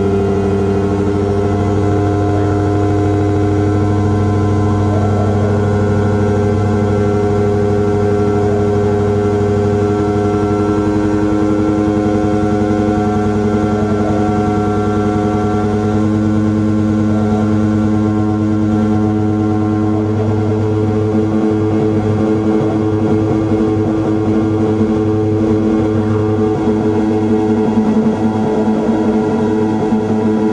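Loud electronic drone played live through a small mixer and effects box: a dense bed of held low and mid tones, with layers slowly shifting in and out. A rougher, fluttering texture comes in under the tones over the second half.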